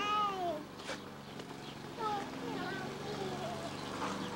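A toddler's high-pitched squeal that falls in pitch, at the very start, followed about two seconds in by a few shorter, softer high vocal sounds, over a steady low hum.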